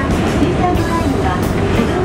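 Background music over the steady low rumble of a moving train.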